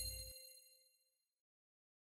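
The tail of a bright, bell-like chime from a logo sting, ringing out over a low rumble that cuts off about a third of a second in. The chime fades away within about the first second and a half.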